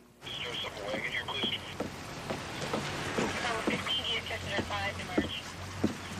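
Outdoor ambience starting suddenly just after the cut: a low steady hum like distant traffic, with quick high chirping calls, typical of small birds, and indistinct voices.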